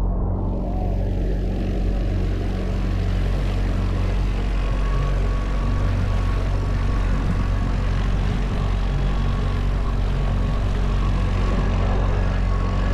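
Outboard motor of an inflatable dinghy running steadily under way, a constant low drone with a rushing hiss of wind and water over it.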